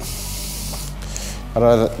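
A page of a glossy book being turned by hand: a soft papery swish lasting about a second, followed by speech.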